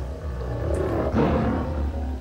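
Tiger roar sound effect, low-pass filtered so that only a deep, dull growl remains. It is one continuous roar that runs for about two seconds and then stops.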